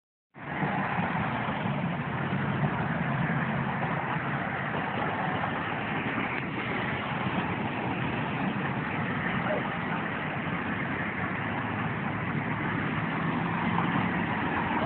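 A steady, unchanging mechanical hum with a hiss over it, like a motor or machine running nearby.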